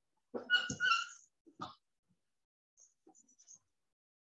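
A short, high-pitched animal cry, like a house pet's, lasting under a second, followed by a single brief knock.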